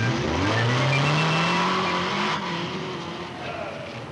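Motorcycle engine accelerating, its pitch rising steadily for about two seconds, then fading away.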